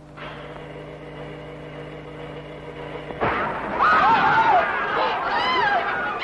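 A steady held chord of film music, then about three seconds in a sudden loud burst of a crowd, with many high voices rising and falling over each other.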